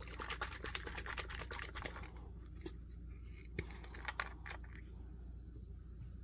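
Faint crinkly rustling of a paper towel and a plastic bag being handled on a wooden desk for about two seconds. A few light clicks and taps follow as a glass ink bottle is picked up and its screw cap taken off.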